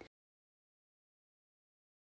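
Dead silence: the soundtrack drops out completely just after the start.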